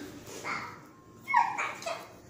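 Young dogs giving a few short, high-pitched barks and cries while playing roughly, the loudest about a second and a half in.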